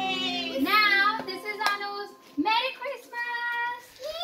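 A child singing a few long, drawn-out notes, with a short break a little after two seconds in before the next held phrase.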